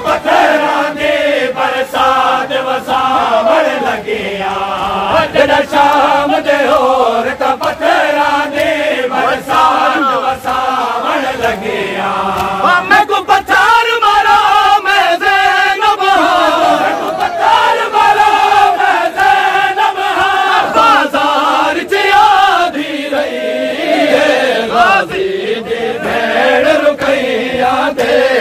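A group of men chanting a noha, a Muharram lament, loudly together, with sharp slaps of hands beating on chests (matam) sounding through the chant.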